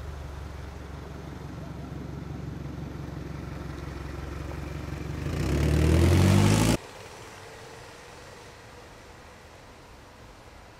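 A motor vehicle's engine running steadily, then growing louder with its pitch rising as it speeds up. It cuts off suddenly about seven seconds in, leaving quieter outdoor background.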